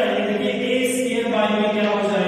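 A voice holding long, chant-like tones that change pitch slowly, without a break.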